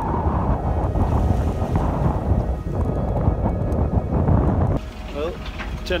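Uneven wind noise on the microphone, mixed with the rush of sea around a sailboat under way. It cuts off abruptly about five seconds in.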